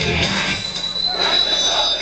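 Live heavy metal concert as the band's playing thins out about half a second in, leaving loud crowd shouting with a high steady squeal held through the second half.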